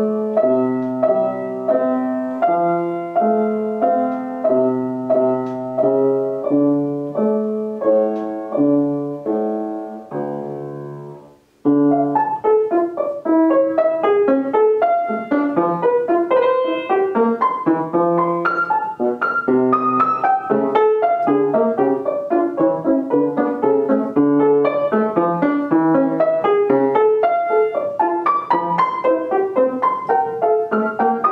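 Original 19th-century Pleyel grand piano played: a slow, even chordal passage ends on a chord that dies away about eleven seconds in. After a brief pause comes a fast passage of rapid running notes.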